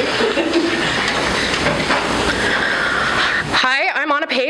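Audience applause filling the hall, a steady loud clatter that cuts off suddenly about three and a half seconds in.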